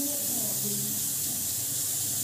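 A steady high-pitched hiss at an even level, with a faint voice murmuring briefly in the first half.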